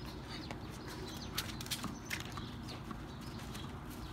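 Scattered light footsteps and scuffs, with a few faint bird chirps over a low steady background hum.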